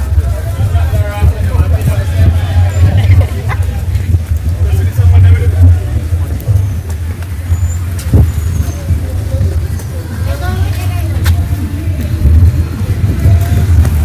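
Street ambience in a busy town: car traffic and scattered voices of passers-by over a heavy, constant low rumble, with a few short clicks.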